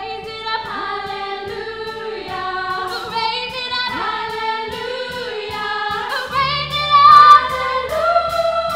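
A choir of young women's voices singing together in harmony on stage. About six seconds in, low sustained instrumental notes come in underneath, and the music swells to its loudest just after.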